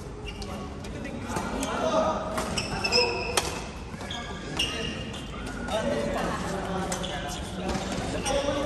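Badminton-court sounds in an echoing sports hall: sharp taps and short high sneaker squeaks on the court floor, over a murmur of voices from around the hall.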